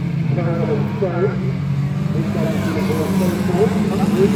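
Engines of a pack of small saloon race cars running at speed round an oval, a steady drone that grows a little louder near the end as the cars come closer, with a public-address commentator talking over it.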